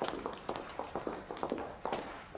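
Footsteps on a hard floor, a quick uneven run of sharp taps, several a second.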